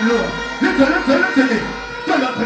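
Dancehall music played live over a stage PA: a backing track with steady sustained tones, and a deejay's voice chanting into the microphone over it.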